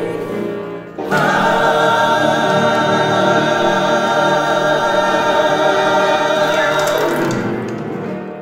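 Mixed vocal ensemble singing in close harmony with piano accompaniment: a phrase ends about a second in, then the voices hold one long final chord that fades away near the end.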